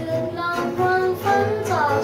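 A boy singing a Thai pop song while strumming an acoustic guitar.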